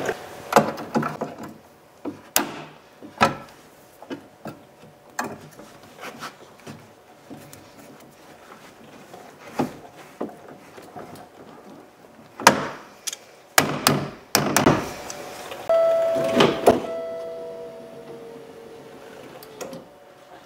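Pliers and steel parts clicking and knocking irregularly as a coil spring is twisted back onto a power window regulator, with a cluster of louder knocks and a brief steady ringing tone near the end.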